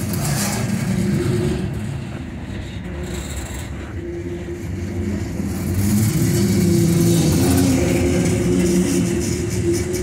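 Freight cars, centerbeam flatcars loaded with lumber and then covered hoppers, rolling past with a steady rumble of steel wheels on rail and a steady hum. It grows louder about six seconds in.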